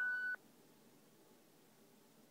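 The last of a long held vocal note with its overtones, which cuts off suddenly about a third of a second in; after that, near silence.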